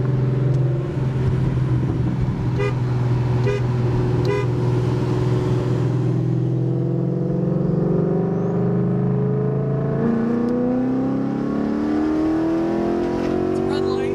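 Ford Mustang GT's 5.0 Coyote V8, heard from inside the cabin, cruising steadily and then accelerating with rising pitch. The pitch drops back at an upshift about ten seconds in, then climbs again.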